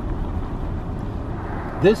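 Steady low road and engine noise heard inside a moving car.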